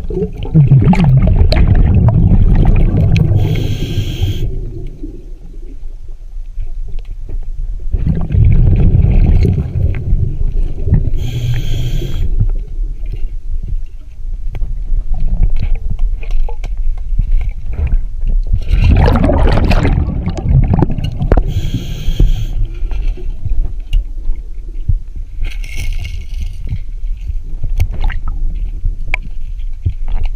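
A scuba diver breathing through a regulator underwater: a low rumbling gurgle of exhaled bubbles, and a short hiss from the regulator at each breath, several breaths in all.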